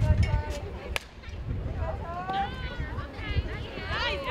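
A softball bat striking a pitched ball with a single sharp crack about a second in, followed by high-pitched shouts and cheers from players and spectators.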